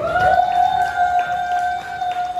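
A female singer holds one long high note through the PA, sliding up into it at the start and then holding it steady: the final note of the song.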